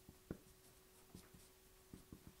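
Faint marker strokes on a whiteboard: a few soft, short taps and scrapes of the pen tip as words are written.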